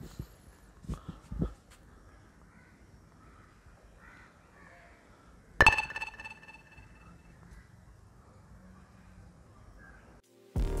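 Faint outdoor ambience picked up by a Deity V-Mic D4 Mini shotgun mic in its faux-fur windshield, with a couple of low thumps near the start. About halfway through there is one loud, sudden ringing call that fades over a second or so.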